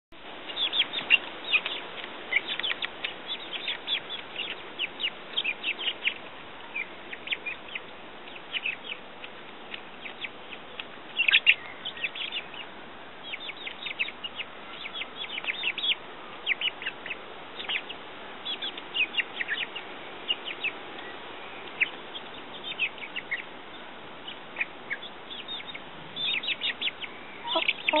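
Young chickens peeping as they feed from a hand: a constant run of short, high chirps, several a second.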